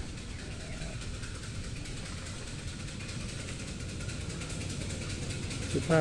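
Steady low background rumble with no distinct events in it.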